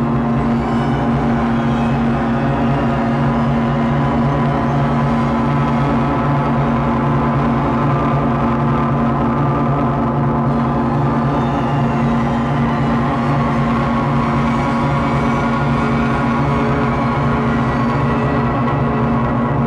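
Dark ambient synthesizer interlude: low sustained drone chords held steady, with no drums or beat.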